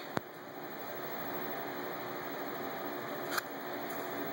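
Steady background noise of a small room, such as a fan or air handling, with one sharp click just after the start and a brief soft noise about three and a half seconds in.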